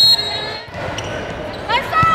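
A referee's whistle sounds briefly at the very start to signal the serve. Then, about 1.7 s in, sneakers begin squeaking on the indoor volleyball court as play moves.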